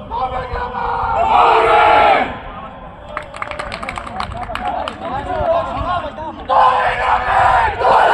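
A football team in a huddle shouting together as a rallying cry, in two loud group shouts: one about a second in and another from about six and a half seconds. Quieter talk among the players comes in between.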